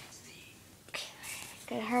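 Quiet room, then a whisper about a second in, and a girl starting to speak near the end.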